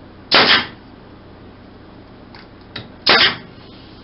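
Small pneumatic nailer firing twice into stacked wooden rings, about three seconds apart. Each shot is a sharp crack followed by a short hiss.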